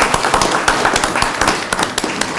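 A small group applauding: many overlapping hand claps in a fast, irregular patter.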